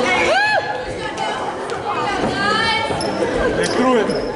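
Voices calling out and chattering in a reverberant school gym during a basketball game, with a few sharp knocks of a basketball bouncing on the hardwood floor.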